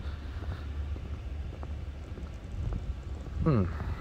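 Low steady rumble of wind on a phone's microphone outdoors. A short "hmm" is voiced near the end.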